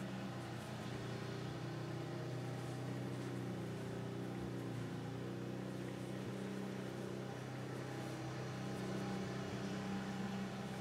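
A steady low hum with a few held pitches, machine-like and unchanging.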